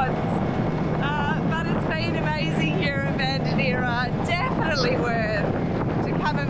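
A small dinghy's outboard motor running at a steady speed, a low even hum under a woman talking throughout, with wind buffeting the microphone.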